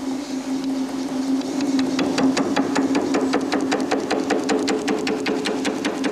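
Eckold Kraftformer forming machine running, its laminate-faced shrinking tool striking a metal angle section in rapid, evenly spaced strokes over a steady motor hum. The knocks grow stronger after the first second or two.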